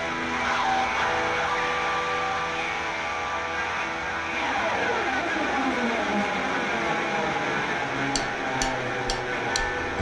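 Amplified electric guitar holding sustained ringing notes, with a long slide falling in pitch about halfway through. Near the end come four evenly spaced taps: a drummer's count-in just before the band starts.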